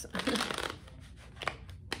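A deck of tarot cards being riffle-shuffled by hand: a quick burst of riffling near the start, then softer handling of the cards.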